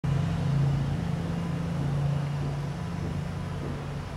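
A steady low mechanical hum, growing slowly quieter.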